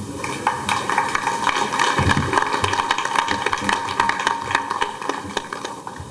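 Audience applauding: a dense, steady patter of many hands clapping that thins out near the end.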